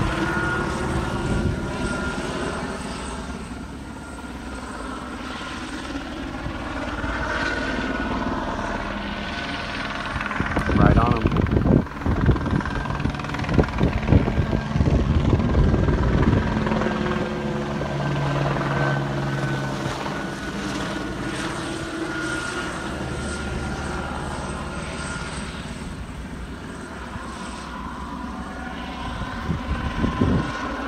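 Helicopter circling overhead: a steady rotor and engine drone that slowly swells and fades. About ten seconds in comes a louder stretch of low rumbling lasting several seconds.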